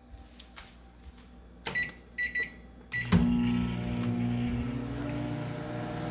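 Countertop microwave oven: four short keypad beeps, then it starts up about three seconds in and runs with a steady hum.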